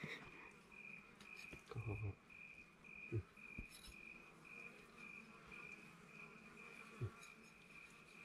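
Faint, steady chirping of an insect, a high pulsed note repeating about two to three times a second, with a few faint soft knocks.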